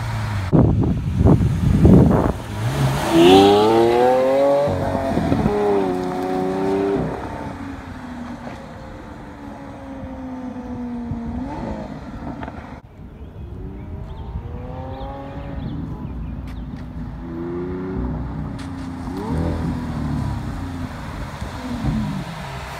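Lamborghini Aventador Roadster's V12 engine accelerating hard from a standstill, the revs rising in steps through several quick upshifts and fading into the distance. Later it is heard again far off, revving up through the gears and growing louder as it approaches.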